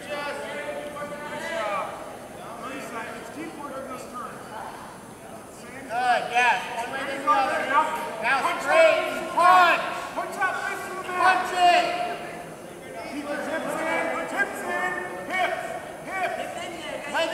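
Several voices shouting at once in a gym: coaches and spectators yelling to the wrestlers during the bout. The shouting grows loudest from about six seconds in to around twelve seconds, then picks up again near the end.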